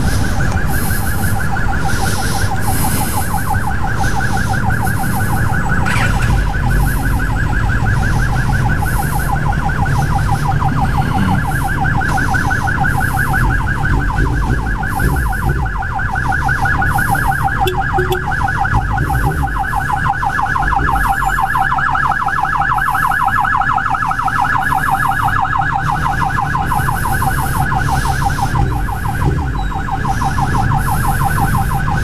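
Ambulance siren sounding continuously in a fast, steady warble, over a low rumble of traffic.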